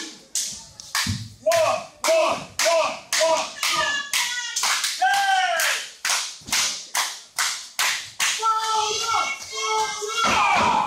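Audience clapping in a steady rhythm, about two to three claps a second, with voices, some of them children's, shouting along.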